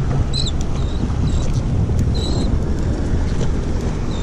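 Steady low rumble of wind buffeting the microphone, mixed with the run of boat outboard motors, and several short high squeaks over it.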